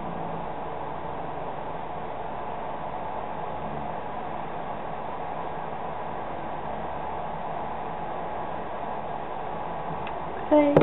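Steady background hiss with no distinct sounds, the noise floor of a low-quality recording.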